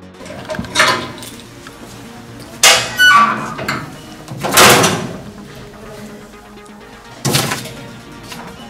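Music with several loud sudden bangs and knocks, spaced one to two seconds apart: a metal school locker door and the things inside it being handled.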